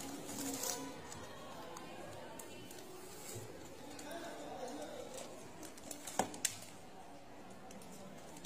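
Faint background chatter with light handling noise as aluminium baking pans and a cardboard box are moved on a table, with two sharp knocks close together about six seconds in.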